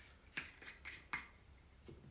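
Screw cap being twisted off a glass bottle of Aperol: a handful of faint, sharp clicks and ticks.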